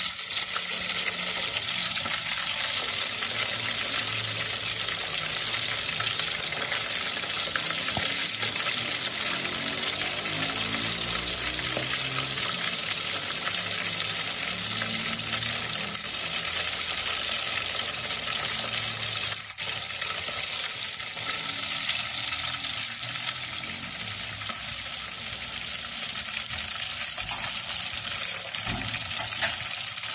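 Chicken legs deep-frying in hot oil: a steady, dense sizzle and crackle of bubbling oil, broken by a momentary drop about two-thirds of the way through.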